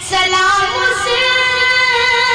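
A boy singing a naat, an Islamic devotional poem, solo into a microphone. A new phrase begins right at the start, with long held notes.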